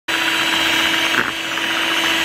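Electric hand mixer running steadily at speed, its twin beaters whipping a cream and Milo mixture. A steady motor whir with a fixed hum, dipping slightly for a moment just past a second in.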